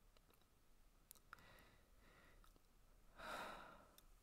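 A woman's sigh, one soft breathy exhale about three seconds in, with a fainter breath a little before it; otherwise near silence with a couple of faint clicks.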